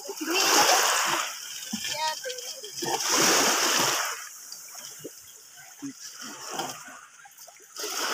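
Water splashing as a fishing net is hauled up out of the water beside a boat: two loud splashes about three seconds apart, then smaller ones.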